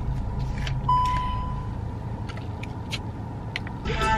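Steady low rumble of a car heard inside its cabin, with a few small clicks and rustles as a banana is peeled. About a second in, a thin steady tone sounds for about a second.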